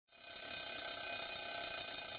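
Opening of an intro jingle: a bright, high, sustained ringing shimmer over a steady hiss, fading in quickly at the very start.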